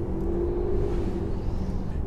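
Steady low road and drivetrain rumble heard inside an SUV's cabin while driving, with a faint steady hum that fades after about a second and a half.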